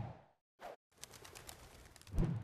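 Short sound effects for an animated logo: a low burst right at the start that fades out within half a second, a brief blip, then a run of soft ticks through the second half.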